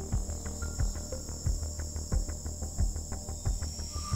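Dark background music: a low steady drone under a fast, even ticking of about six ticks a second, with a steady high whine above it.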